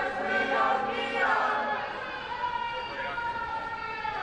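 A group of protesters' voices chanting together, with long drawn-out syllables.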